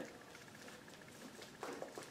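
Faint rustling and light scraping as a poinsettia in a plastic nursery pot is handled over a planter, with a short spell of handling noise near the end.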